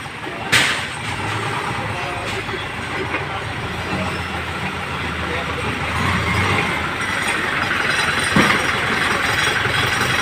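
A truck engine idling steadily, with one sharp knock about half a second in.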